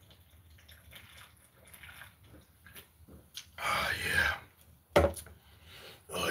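A man drinking from a soda can: faint small sounds at first, then a loud breathy exhale a little past halfway, and a single sharp knock about five seconds in as the can is set down.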